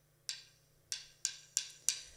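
Drumsticks clicked together as a count-in: one click, then four quicker, evenly spaced clicks at about three a second.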